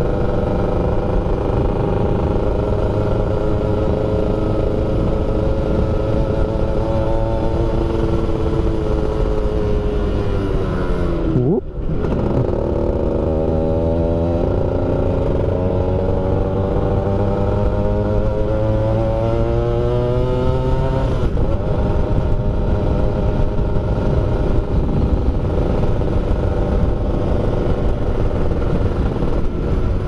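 Yamaha F1ZR's single-cylinder two-stroke engine heard from the bike while riding, with a low wind rumble under it. The engine note falls as the rider eases off, breaks briefly about twelve seconds in, then climbs steadily for about nine seconds before a change and runs on fairly steady.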